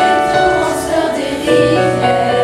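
School choir of teenage pupils, mostly girls, singing held notes in harmony, moving to new notes about one and a half seconds in.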